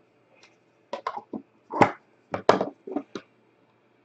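Handling noise from opening a box of trading cards: a quick run of short knocks and scrapes about a second in, with two longer scrapes in the middle, as the card box and the stack of cards are moved.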